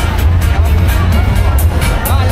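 Loud dance music with a heavy, steady bass beat, played over the fairground ride's sound system, with crowd chatter mixed in.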